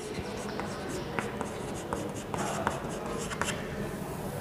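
Chalk writing on a blackboard: an irregular run of short scratches and small taps as letters are written.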